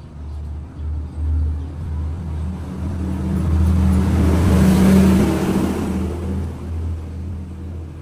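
A motor vehicle engine running, growing louder to a peak a little past the middle and then fading, as of a vehicle passing by.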